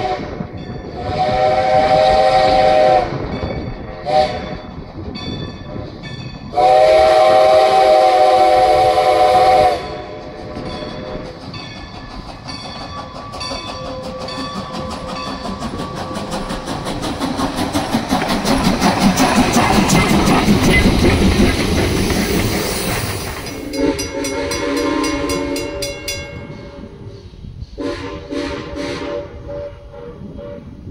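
A steam locomotive's chime whistle sounds for the grade crossing: a long blast, a short toot and another long blast. The steam train then approaches and passes close by, its clanking, clicking running noise swelling to its loudest in the middle. A lower whistle chord and a few short toots follow near the end.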